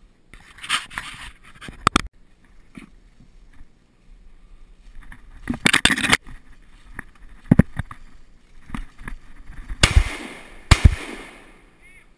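Footsteps and brush crashing through dry leaves and undergrowth as the hunter closes in on a setter on point. Near the end come two sharp shotgun shots less than a second apart, each with a ringing tail.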